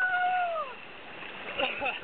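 A person's drawn-out vocal cry, held on one pitch and then sliding down, lasting under a second, followed by a few short voice sounds near the end. A steady rush of river water runs underneath.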